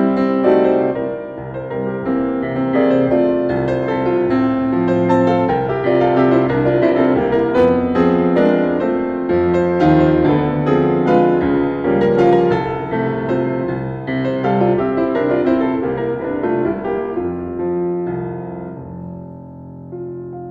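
Piano playing a waltz, with many notes across the low and middle range, growing quieter over the last few seconds.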